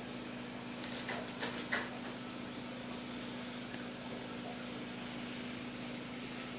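A few short crinkles from a plastic fish-food pouch being handled, about a second in, over a steady low hum.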